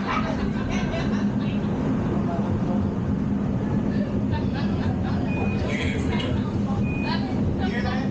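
Simulated Space Shuttle launch rumble from a motion-simulator ride's sound system, a steady deep roar through the ascent, with muffled voices over it and two short high tones in the second half.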